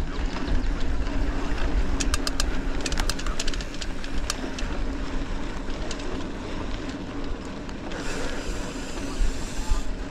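Riding a mountain bike over a dirt singletrack: steady wind rumble on the microphone and tyre noise on the trail, with a cluster of sharp clicks and rattles from the bike over bumps about two to four seconds in.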